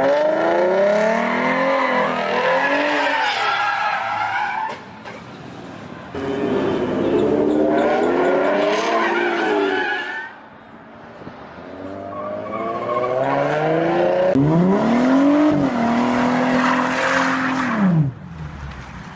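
Ford Mustang engine revving hard in three long runs, its pitch climbing and falling, with tyres skidding as the car slides sideways. The engine drops back between the runs.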